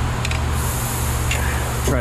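A steady low machine hum, with a few light clicks and a soft hiss in the second half.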